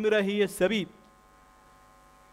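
A man's voice speaking over a microphone breaks off just under a second in, leaving a faint, steady electrical hum through the pause.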